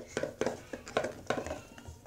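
Small cardboard smartwatch boxes being opened and handled: a quick series of sharp clicks and scrapes of packaging.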